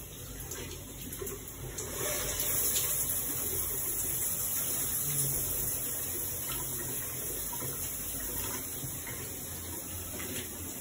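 Water running steadily from a bathroom sink tap, getting louder about two seconds in.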